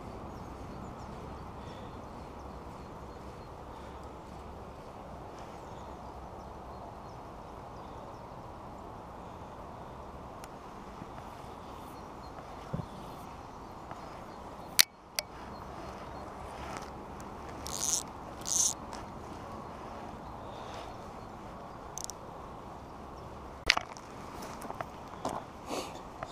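Steady low background noise with a sharp click about halfway through, then two brief high swishes in quick succession: a fly line whipping through the air during casting.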